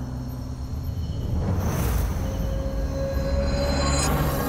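Low engine rumble of a bus driving past on a dirt road, mixed with a dark, droning film score; a whooshing swell builds about halfway through.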